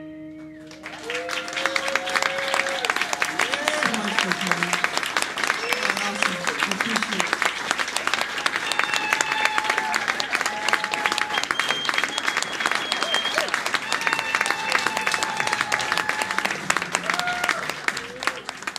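Small audience clapping and cheering at the end of a live acoustic song, with the final guitar chord ringing out as the applause starts. Shouts and calls from the crowd rise over the steady clapping.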